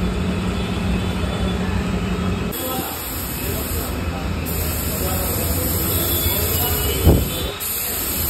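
Scooter being washed with a pressure-washer hose: a steady motor hum, then from about two and a half seconds in a loud high hiss of the water jet that breaks off and resumes. A single sharp thump just after seven seconds.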